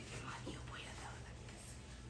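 Faint whispered speech over quiet room tone.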